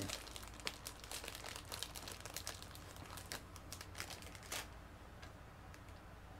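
Plastic snack wrapper crinkling and tearing as a packaged pastry is unwrapped: a run of faint crackles that stops about four and a half seconds in.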